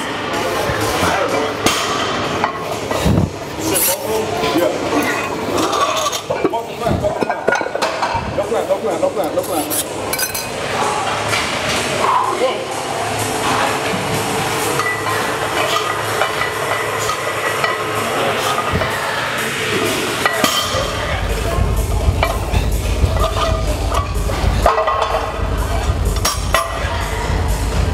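Iron barbell plates clinking and knocking during a heavy bent-over barbell row drop set, under background music. A deep bass comes in about 21 seconds in.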